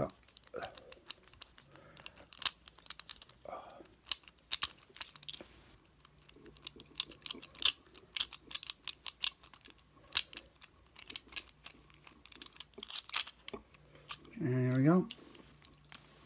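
Lock pick and tension wrench raking and jiggling in the keyway of a Chateau C970 discus padlock: quick, irregular small metallic clicks and ticks as the pick works the pins.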